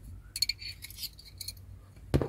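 A quick series of light metallic clinks and scrapes over about a second: a screwdriver working against the metal clutch slave cylinder as it is taken apart.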